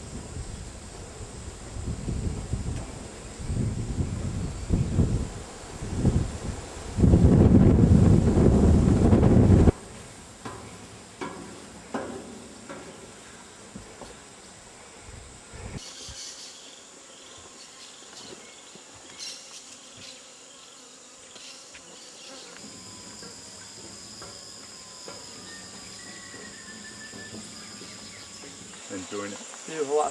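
Rainforest insects buzzing steadily at a high pitch. For the first ten seconds, low rumbling gusts of noise hit the microphone, loudest near the end of that stretch and then stopping suddenly.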